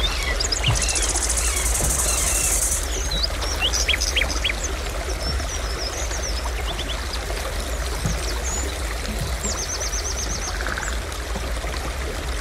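Steady rush of water with a low rumble underneath, overlaid by scattered short bird chirps and calls. A high buzzing note runs through the first couple of seconds, and a rapid trill of about eight notes comes near the end.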